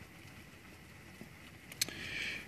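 Faint steady rain, a soft even hiss, with a couple of sharp clicks near the end.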